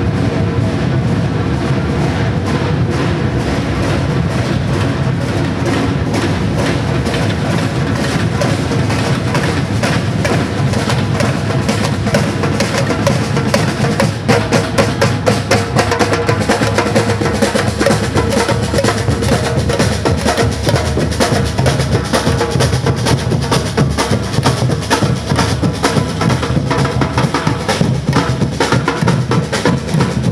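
Batucada drum group playing on the march: deep surdo bass drums under snares and other drums in a steady, continuous rhythm. From about halfway the hits stand out more sharply.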